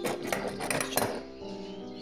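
Metal clinking and rattling from a steel cutting-torch guide carriage and compass rod being picked up and moved on a wooden table, a flurry of sharp clinks in the first second, over background music.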